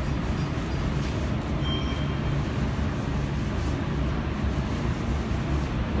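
A steady low mechanical rumble, with a faint short high tone about two seconds in.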